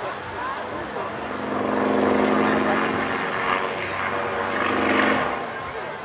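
Aerobatic propeller plane's engine droning steadily overhead, dropping away abruptly about five seconds in, with voices in the background.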